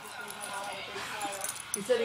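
Metal tags on a shih tzu's collar jingling lightly as the dog moves, over faint background talk. A short voiced sound rises near the end.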